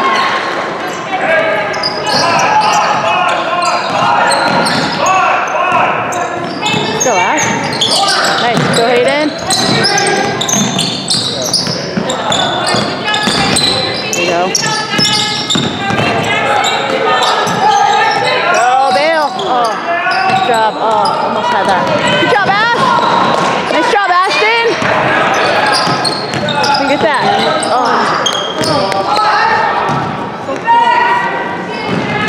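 Basketball game sounds in a school gym: a ball bouncing on the hardwood floor, sneakers squeaking as players run, and overlapping shouts from players, coaches and spectators, all echoing in the hall.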